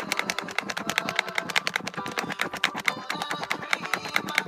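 Wet mesh foaming net being squeezed and kneaded by hand to whip facial cleanser into lather: a fast, continuous run of small squishy crackles and clicks, about ten a second.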